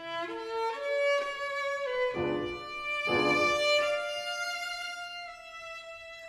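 Violin playing a slow, sustained melody with notes that slide between pitches, over a soft piano accompaniment that strikes chords about two and three seconds in.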